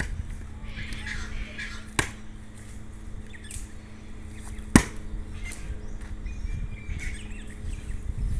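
Two sharp knocks of wood being struck, the hardwood resisting: one about two seconds in and a louder one almost three seconds later. A faint steady hum and low rumble run underneath.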